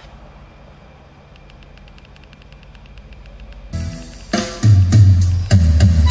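Recorded music from a MiniDisc in a Lo-D AX-M7 MD/CD receiver, played through loudspeakers. After a low hum and a couple of seconds of faint, quick, even ticking that grows louder, the song starts loudly about four seconds in with drums and heavy bass.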